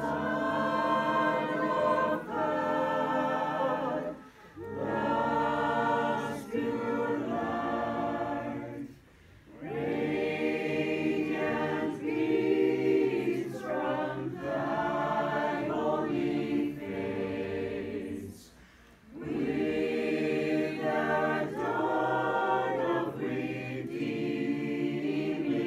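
Mixed choir of men and women singing a Christmas carol, in sung phrases with short breaks between them.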